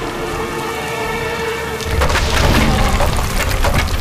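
Soundtrack storm effects: rain over held musical notes, then from about two seconds in a loud, deep thunder rumble with crackling strokes.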